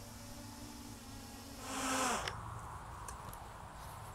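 Small quadcopter's electric motors and propellers humming faintly while it comes down to land. The hum swells briefly, then winds down in pitch and stops a little over two seconds in.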